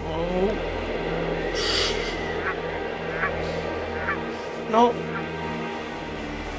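Soundtrack music drone with a series of short, honking bird-like cries. One rising cry opens it and the loudest comes near the end.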